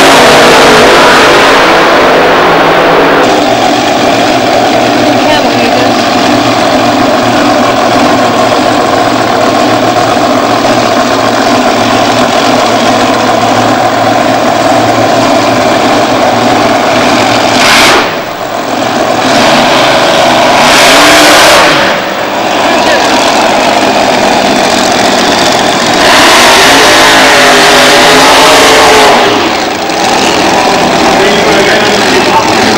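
Drag racing engines running at very high volume, overloading the camcorder microphone, with abrupt changes in the sound at several shot cuts.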